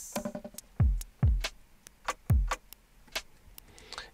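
A basic electronic drum loop played from Ableton's Drum Sampler: quick ticking hi-hats and three low kick drums whose pitch drops sharply, with a short pitched note near the start. The hi-hat is being played through the sampler's pitch envelope effect.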